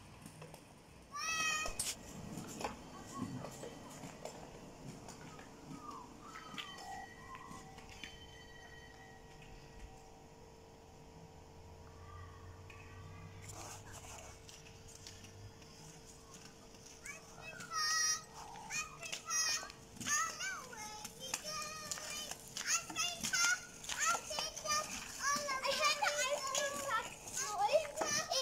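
Young children shrieking, calling out and squealing at play: a short squeal about a second in, then busier, louder calls through the last third. A faint steady hum runs underneath.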